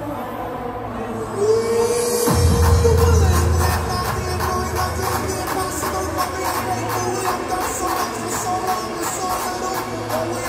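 Hardcore dance music played live over a large sound system: a held synth tone dives sharply in pitch about two seconds in and drops into a fast, pounding kick drum with heavy bass.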